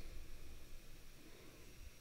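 Faint room tone: a steady hiss with a low hum and a faint high whine, no distinct clicks.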